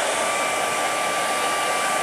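Handheld hair dryer running steadily: a constant rush of air with a faint steady whine from its motor.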